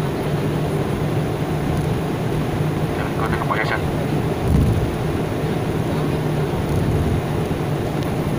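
Airliner's jet engines heard from inside the passenger cabin, a steady hum and rush as the plane moves along the ground. A low thump comes about halfway through.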